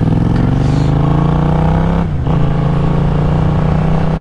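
Yamaha MT-07's parallel-twin engine pulling under acceleration, rising in pitch for about two seconds. It dips briefly and drops in pitch as it shifts up a gear, then pulls on steadily over a rush of wind.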